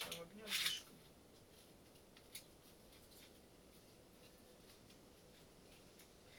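A short rustle of dry crumbled moss substrate being handled in the first second, then mostly quiet room tone with one small click a little over two seconds in.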